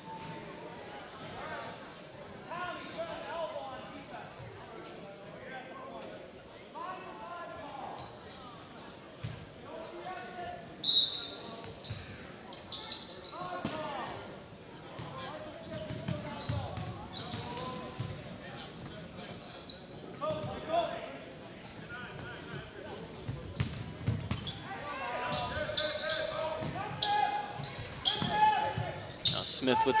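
Basketball being dribbled on a hardwood gym floor, with spectators' chatter around it in a large, echoing gymnasium.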